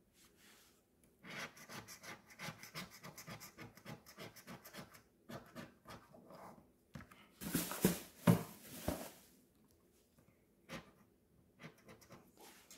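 A coin scratching the coating off a paper scratch-off lottery ticket in quick repeated strokes, with a few louder, longer scrapes about two-thirds of the way in.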